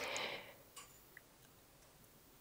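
Near silence in a pause: room tone, with a short faint hiss at the start and a couple of faint ticks about a second in.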